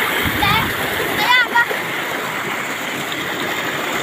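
Muddy water rushing and churning down a shallow dirt channel, breaking white around a person sitting in the flow: a steady rushing noise. A few short voice calls sound within the first second and a half.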